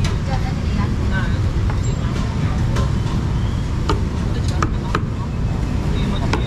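Busy street-market ambience: a steady low rumble of road traffic with voices, and occasional sharp clicks and clinks every second or so.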